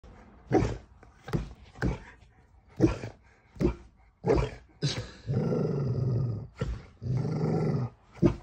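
Golden retriever playing rough, giving a string of about seven short barks, then two long growls in the last three seconds.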